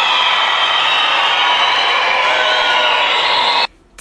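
Audience applauding, with cheering voices mixed in; the applause cuts off suddenly near the end.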